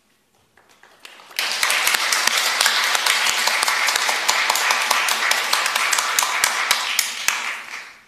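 Group applause: a few scattered claps, then full applause from about a second and a half in that holds steady and fades out near the end.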